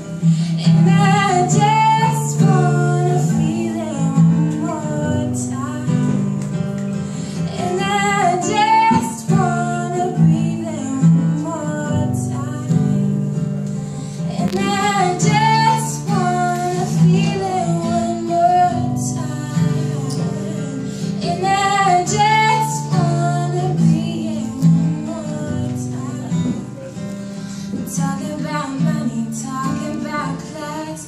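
A woman singing a song live while playing chords on an acoustic guitar.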